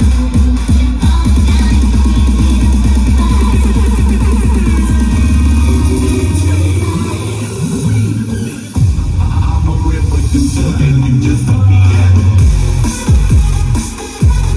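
Electronic dance music with heavy bass played loud through a 4x4 PA speaker set of four subwoofer cabinets and four stacked top cabinets. A fast, pounding bass pattern drops out a little past halfway, then the bass line comes back in.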